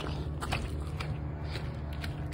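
Movement and handling noise: light crackles and creaks about twice a second over a low steady rumble.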